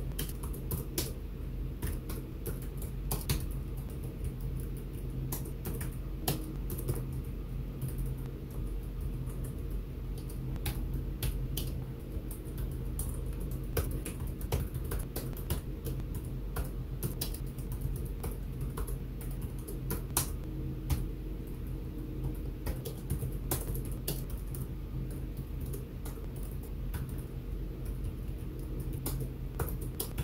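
Typing on a computer keyboard: irregular runs of keystrokes throughout, over a steady low hum.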